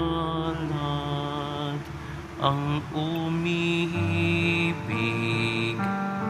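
Slow communion music in church: sustained chords held a second or two each, changing several times over a steady low note.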